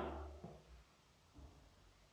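Near silence as cooking oil is poured from a plastic bottle into a glass jar of water, with only two faint soft sounds, about half a second and a second and a half in.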